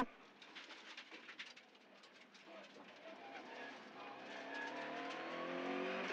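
Subaru Impreza WRX STi rally car's turbocharged flat-four engine heard from inside the cabin, fainter at first, then the revs climb steadily under acceleration over the second half.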